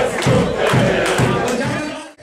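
A crowd of football fans singing a chant together in a crowded room, clapping along in rhythm at about two beats a second.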